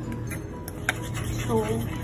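A metal spoon stirring a wet gram-flour paste in a small bowl. It gives a few sharp clicks and taps against the bowl in the first second.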